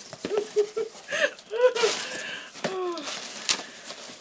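A woman laughing in several short bursts, with handling noise from a cardboard box and a sharp click near the end.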